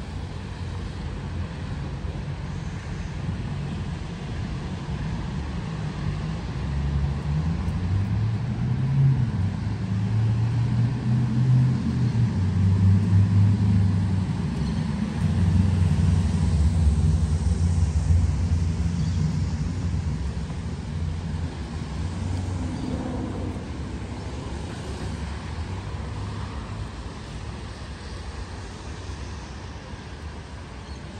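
Street traffic: a low vehicle engine rumble swells over several seconds, is loudest in the middle, then fades away.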